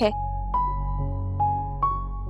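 Soft background music score: a few held notes enter one after another over a low, steady drone.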